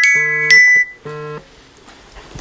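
Alarm tone ringing: a repeating pattern of bright, chiming notes over a pulsing lower tone, which stops about a second and a half in.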